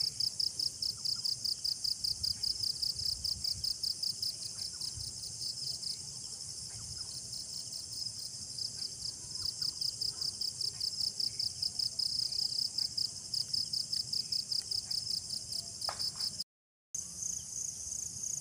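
A high-pitched chorus of night insects chirping in fast, even pulses, with a second, higher pulsing voice joining near the end. The sound cuts out completely for a moment shortly before the end.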